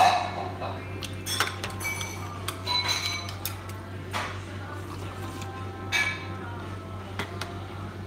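Chopsticks and ceramic and lacquer bowls clinking and knocking against one another and the tray while eating, an irregular run of knocks and clinks, the loudest right at the start and another about six seconds in. A steady low hum runs underneath.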